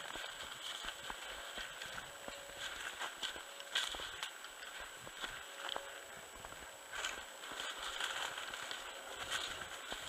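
Footsteps through snow and dry cattail stalks: an uneven run of crunches and crackles as the stems brush and snap.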